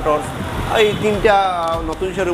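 A man talking, with street traffic running underneath as a low rumble.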